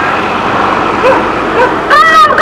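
Road traffic noise: a motor vehicle running close by, a steady rush of noise, with faint voices from the marchers.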